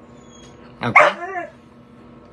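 A dog barking once, briefly, about a second in.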